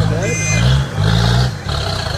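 Low mechanical drone from the winched Jeep, coming in three bursts of about half a second each with short gaps between, and a voice over the first half second.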